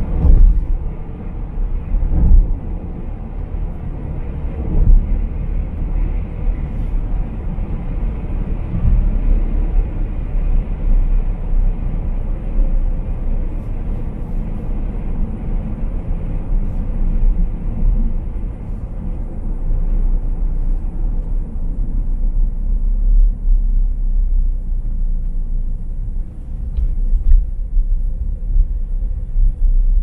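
Steady low rumble of tyre, road and engine noise heard from inside a moving car's cabin. The rumble thins out over the last third as the car slows.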